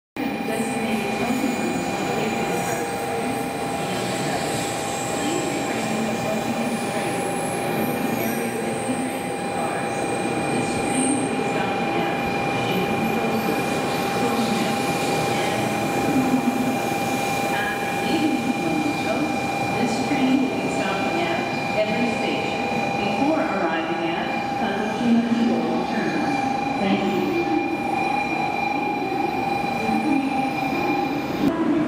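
A Shinkansen train running slowly into a station platform, with a rumbling run-in and a steady high-pitched whine.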